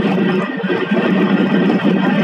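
Fishing trawler's engine and deck machinery running with a steady drone while the trawl net is hoisted.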